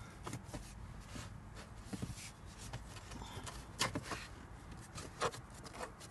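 Faint rubbing and scattered small knocks from a cabin air filter being pushed and slid into its plastic housing by hand. A few slightly louder knocks come about four and five seconds in.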